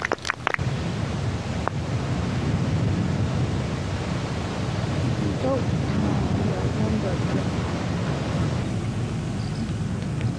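Steady, low wind rumble on an outdoor microphone, with a single faint click a little under two seconds in.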